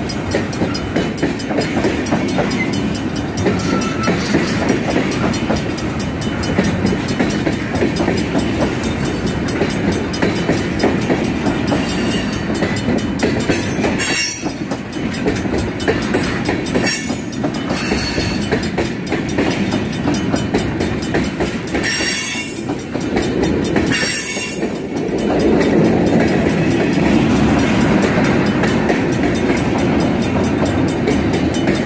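Freight train tank cars rolling past at close range, a steady rumble of wheels on rail. A few brief high-pitched rushes come around the middle, and the rolling grows louder about 25 seconds in.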